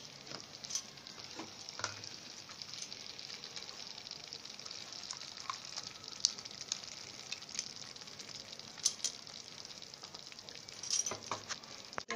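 Tomato masala frying in oil in a pan: a steady sizzle with scattered crackles.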